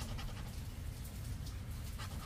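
A poker-chip-style scratcher coin scraping the coating off a lottery scratch-off ticket in faint, short scrapes over a steady low background rumble.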